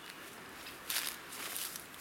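Footsteps through grass and leaf litter, with a brief rustle of foliage about a second in.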